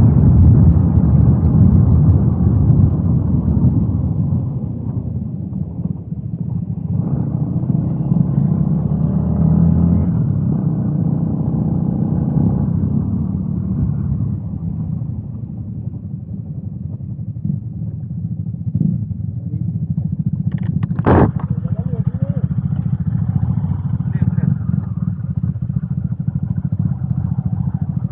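Yamaha Y16ZR's single-cylinder engine running as the bike is ridden, heard on board over wind noise. The engine is loudest at first and eases off after a few seconds, and there is a single sharp knock about three-quarters of the way through.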